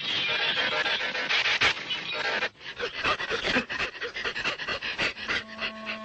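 Cartoon sound effects: a dense, noisy clatter for the first two and a half seconds, then a run of short, quick panting breaths, with a held musical note coming in near the end.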